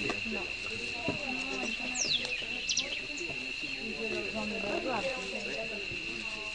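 Low, indistinct voices of several people talking, over a steady high-pitched drone, with a few quick high chirps that fall in pitch about two seconds in.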